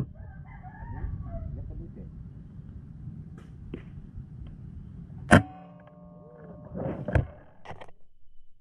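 A sharp, loud click about five seconds in, followed by a short ringing, and a second, smaller knock a couple of seconds later, over low steady outdoor background noise. Faint wavering calls sound in the first second.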